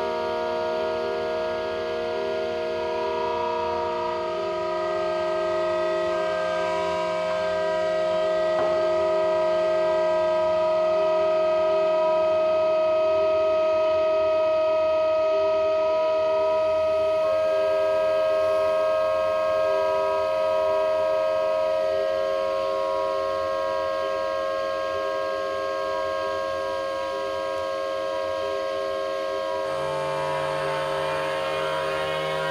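Home-made pipe organ of metal pipes blown through plastic tubing, sounding a dense, steady chord of many held tones. The lower notes drop out about four seconds in and new higher notes join a little past halfway, shifting the chord.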